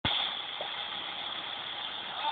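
Four-wheel-drive engines running steadily, heard as an even noisy drone under heavy recording hiss, with a click at the very start.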